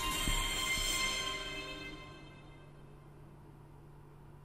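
Intro music ending: its held tones fade out over about two seconds, leaving a faint steady hum.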